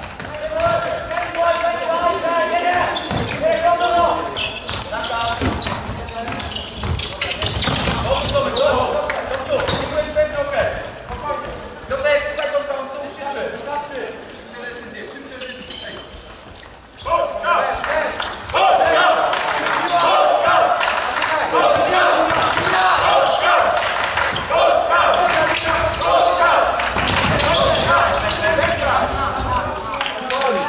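A futsal ball being kicked and bouncing on a wooden sports-hall floor, with shouting voices over it. The sound dips for a few seconds past the middle, then the shouting grows loud and dense.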